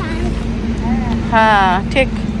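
Voices, with one loud high-pitched voice about one and a half seconds in, over a steady low hum and rumble.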